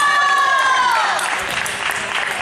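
Table tennis rally with ping-pong ball hits, under scattered applause and one long, high shout that falls away in pitch about a second in.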